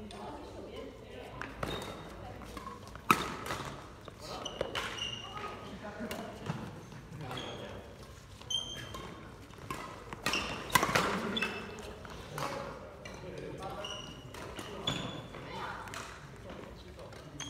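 Badminton play in a large sports hall: sharp smacks of rackets hitting the shuttlecock, the loudest about three seconds in and near eleven seconds, with short high squeaks of court shoes on the wooden floor and voices talking in the background.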